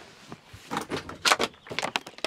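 Handling noises inside a tractor cab: a quick run of knocks and rustles, busiest a little past the middle, as a soft first aid kit is set down and a plastic water bottle is picked up.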